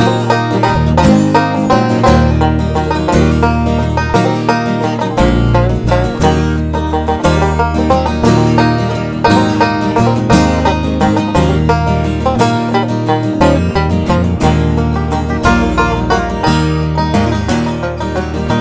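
Resonator banjo playing an instrumental break in a bluegrass-country arrangement, picked fast over a steady low bass line.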